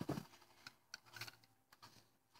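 A handful of faint, scattered plastic clicks and rattles: foam darts being pushed into the rotating six-dart drums of a Nerf Zombie Strike Doominator blaster during a reload.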